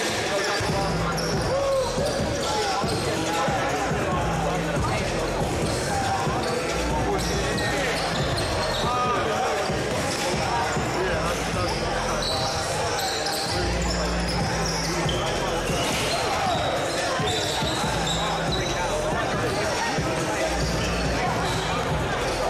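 Basketball game ambience: spectators chattering throughout, with a basketball bouncing on the hardwood court.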